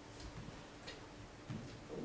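A few faint, irregular clicks and soft knocks over a steady low hum in a quiet room.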